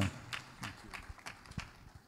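Audience applause dying away into a few scattered hand claps.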